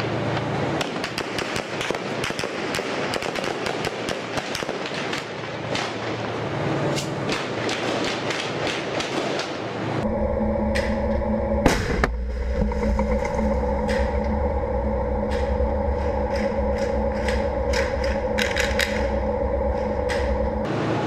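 Rapid, dense crackle of gunfire during a street battle around tanks. About halfway it gives way to the steady low drone of a tank's engine heard from on the tank, with scattered sharp cracks of gunfire over it and one loud bang a couple of seconds after the change.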